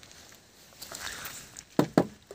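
Faint background noise with a few light ticks, then two sharp knocks in quick succession near the end.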